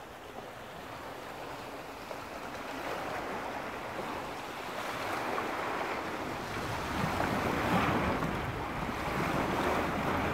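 Small waves washing against an icy, snow-covered shore, swelling louder in the second half, with wind rumbling on the microphone.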